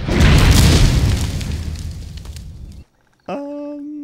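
Film sound effect of a giant metal robot's heavy impact: a sudden loud deep boom with a rumbling decay that dies away over nearly three seconds. After a short gap near the end comes a steady held tone.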